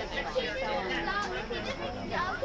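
Indistinct chatter of several voices overlapping, spectators talking close to the microphone.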